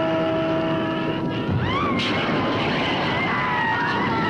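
Drawn-out, wailing screams of burning witches, gliding up and then slowly falling, over a loud, steady roar.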